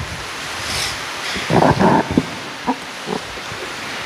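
Irregular rustling and bumping handling noise near a microphone, with a few louder rough bursts about a second and a half to two seconds in, as a book is picked up and carried along the altar.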